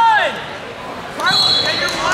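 Shouting voices in a large gym, the tail of a shout at the very start. A short, steady high-pitched tone sounds in the second half.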